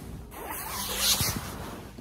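Bedding and pillow rustling as a person stretches and rolls over in bed, a sweeping rustle that is loudest about a second in.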